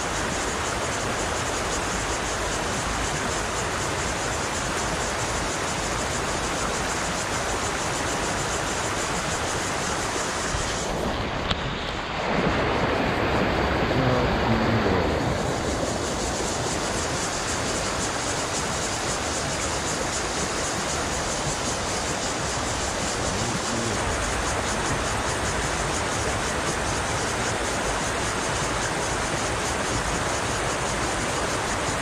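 Steady rush of river rapids running over rocks. Partway through comes a short, louder stretch of a few seconds with some pitched tones in it.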